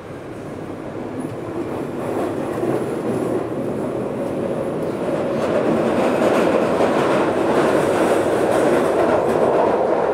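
Victoria line tube train running through a tunnel, heard from inside the carriage: a rumble of wheels and tunnel noise that grows steadily louder over the first several seconds as the train gathers speed, then holds.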